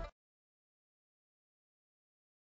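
Music breaks off right at the start, followed by complete silence.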